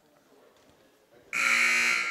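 Basketball scoreboard horn buzzing in a gym: a loud electric buzz that starts suddenly near the end and then rings on in the hall. It signals the end of a timeout.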